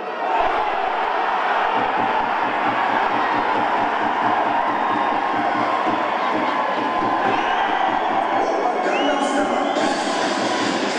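Stadium crowd cheering, swelling suddenly just after the start, with a faint low pulsing beat underneath.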